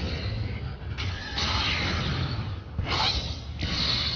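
Anime film battle sound effects: dense rumbling, rushing noise of energy blasts in several surges, with brief dips about a second in, near three seconds and just before the end.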